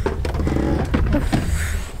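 Wind rumbling on the microphone outdoors, with a few spoken words and a sigh near the end.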